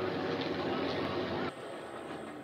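Race broadcast track audio of NASCAR Cup stock car V8 engines running. About one and a half seconds in, the sound switches abruptly to the quieter, hissier sound of an in-car camera.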